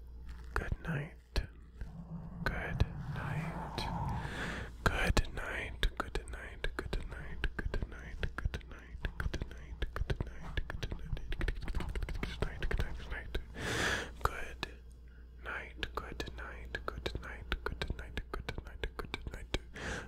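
Close-up mouth sounds right on a foam-covered microphone: a rapid, irregular run of wet lip and tongue clicks and mic kisses mixed with breathy, wordless whispering, which swells briefly about two-thirds of the way through.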